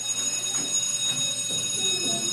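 A school bell or class buzzer sounds: a loud, steady electric buzz that starts suddenly and holds one unchanging tone, signalling that it is time to go to class.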